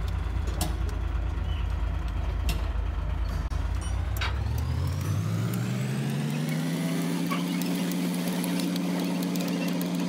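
Low mechanical rumble, then a motor spinning up about halfway through and settling into a steady hum, with scattered sharp metallic clicks and taps.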